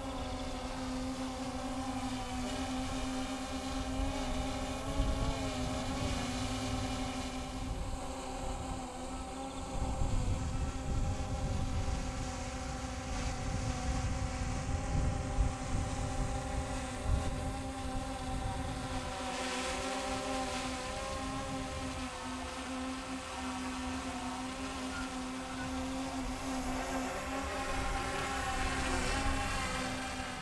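Steady hum of an RC VTOL aircraft's electric motors and propellers while it hovers, holding one pitch throughout, with wind buffeting the microphone.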